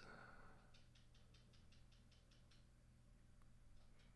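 Near silence: room tone, with a quick run of faint clicks, about five a second, from about a second in, and a couple of single faint ticks near the end.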